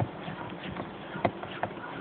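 Beekeeping equipment being handled: a few sharp knocks and clicks, the loudest a little past halfway, over a steady faint hiss.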